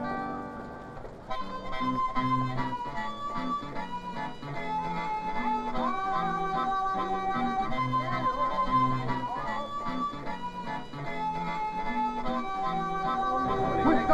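Music: a tune played on a harmonica over a plucked-string accompaniment with a steady repeating bass line, getting louder about a second in.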